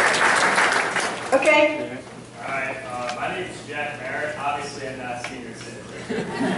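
Audience applauding, dying away about a second and a half in, followed by faint, indistinct talk in the hall.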